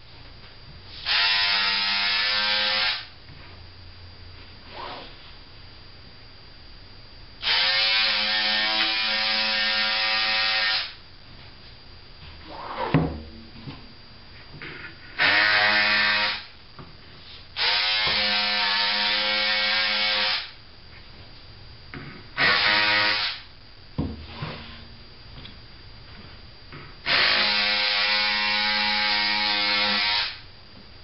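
Electric scissors running in six separate steady buzzing bursts of about one to three seconds each as they trim cotton fabric. Quieter rustling of the fabric and tube and a couple of short knocks come between the bursts.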